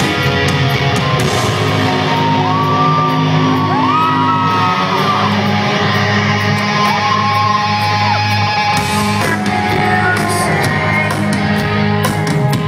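Rock band playing live on electric guitars, bass and drums in a large hall. Sustained low notes run under two high gliding notes that bend up and hold.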